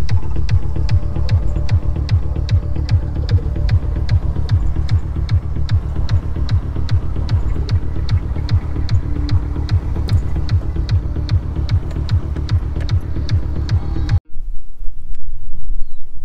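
Background music with a steady, fast beat (about four ticks a second) over heavy bass, which cuts off suddenly a couple of seconds before the end.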